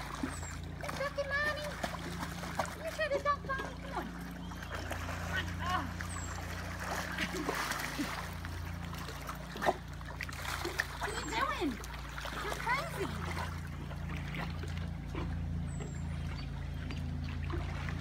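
Pool water splashing and sloshing as a dog paddles and a person moves about in the water, over a steady low hum.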